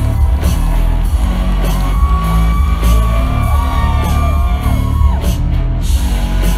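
Live rock band playing loud, with a heavy bass and drum beat and guitar. A wordless voice glides up and down over the music from about two seconds in until near the end.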